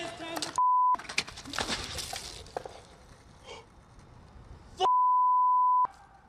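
Two censor bleeps: a steady single-pitch tone, once briefly and once for about a second, each replacing the sound beneath it. Fainter outdoor noise fills the gaps between them.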